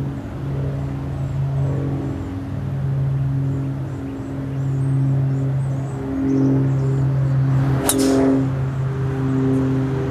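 Golf driver striking a teed ball: one sharp crack near the end, over a steady low hum.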